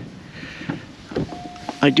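Car's warning chime, a steady tone that starts about two-thirds of the way in: the car's electrics are getting power from the portable jump starter clamped to its battery.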